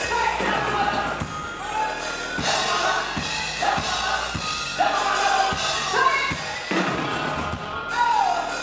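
Live gospel band playing with a steady drum beat under sung lead and backing vocals, whose lines often fall in pitch at the ends.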